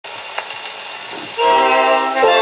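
78 rpm shellac record playing on a portable gramophone: surface hiss with a single click, then, about 1.4 s in, the orchestra comes in on a loud held chord.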